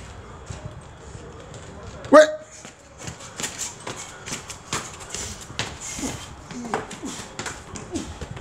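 A man's shout of "Ouais!" about two seconds in as a start call, then quick footsteps of two people running up concrete stairs: a rapid, irregular run of sharp taps from about three seconds in.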